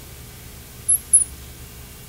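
Marker tip squeaking on a glass lightboard while drawing: two short, high squeaks about a second in, over a low steady room hum.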